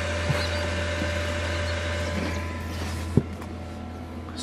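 Steady low hum of a running incubator with a faint steady tone over it; a sharp click comes about three seconds in, after which it is quieter.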